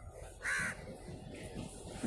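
A crow cawing once, a single short harsh call about half a second in, over a faint low background rumble.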